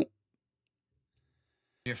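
Near silence: a dead gap in the audio, cut in abruptly after a short laugh at the very start, with speech resuming just before the end.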